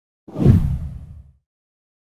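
A whoosh sound effect for an animated graphic transition: one deep swoosh that swells suddenly about a quarter second in and fades away by about a second and a half.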